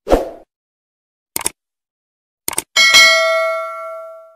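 Subscribe-button animation sound effects. A short thud comes first, then two pairs of quick clicks about a second apart. Near the end a bright bell ding rings out and fades.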